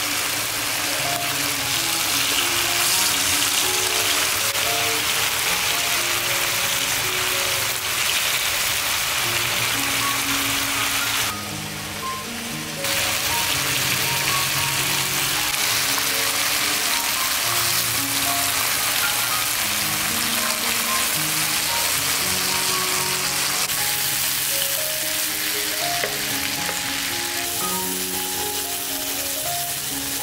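Pork slices sizzling as they fry in oil in a pan, a steady dense hiss that cuts out for about a second and a half near the middle. Background music plays throughout.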